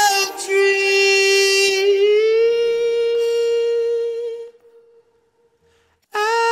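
Unaccompanied male lead vocal holding one long wordless note, stepping up in pitch about two seconds in. The note fades out about four and a half seconds in, leaving a moment of near silence.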